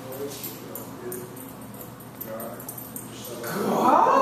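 A dog whining and yipping, in high bending pitches that swell loud in the last half second.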